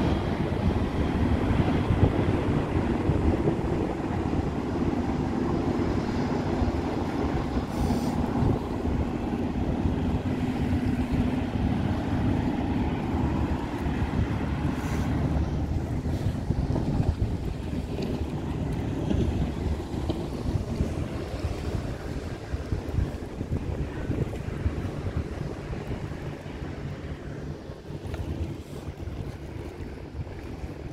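Wind buffeting the microphone over choppy river water, with the steady drone of a passing high-speed passenger catamaran ferry that fades as it moves away.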